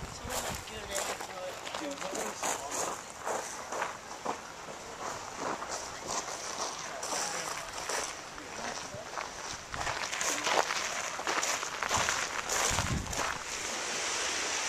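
Footsteps and handling knocks from a handheld camcorder carried by someone walking, with indistinct voices in the background. The sound gets louder in the last few seconds.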